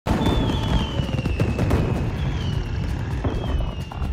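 Fireworks bursting and crackling over a low rumble, with three high falling whistles.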